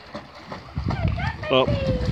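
A dog splashing as it swims to the side of a pool and scrambles out over the edge, with a brief 'oh' from a woman's voice near the end.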